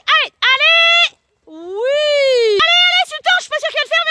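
A high-pitched voice shouting drawn-out calls of encouragement, with one long call rising and falling in pitch, then a quick run of short repeated calls near the end.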